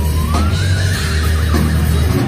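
Distorted electric guitar playing a high lead note that dips, then glides upward and holds, over a sustained heavy low note.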